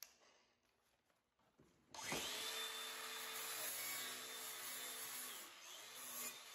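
Angle grinder with a flap disc spinning up about two seconds in, then running steadily as it grinds burrs off cut sheet steel, with a steady whine and a hiss. It eases off near the end.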